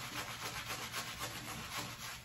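Synthetic-bristle shaving brush working shaving-soap lather over the face: soft, quick, steady rubbing strokes.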